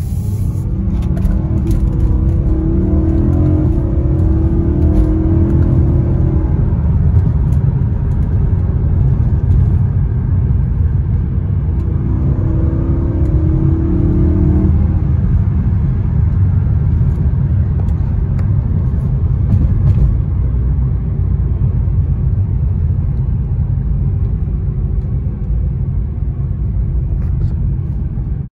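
BMW M3's 4.0-litre V8 and road noise heard from inside the cabin while driving: a steady low drone, with the engine note coming up strongly under throttle in the first several seconds and again about halfway through.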